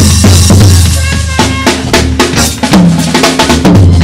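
Live jazz band with the drum kit to the fore: quick, busy kick, snare and rimshot strokes over a held low bass line, with a few sustained pitched notes from the band.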